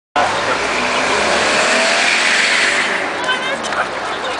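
A vehicle passing close by on a road, its noise swelling and then fading out by about three seconds in. After that, people's voices.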